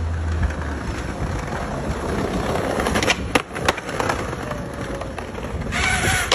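Skateboard wheels rolling over brick paving in a steady rumble, with three sharp clacks of the board about halfway through and a louder scrape and clack at the end.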